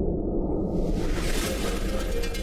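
News-intro sound design: a low rumbling drone, with a whoosh rising into a bright hiss that swells in under a second in.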